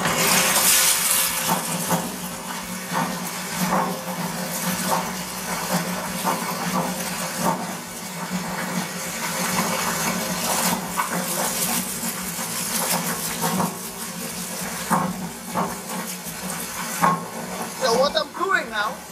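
Dried coffee beans poured from a plastic bucket into the hopper of a coffee huller: a continuous rattling patter of beans with many small clicks, heaviest in the first two seconds. A steady low hum runs underneath.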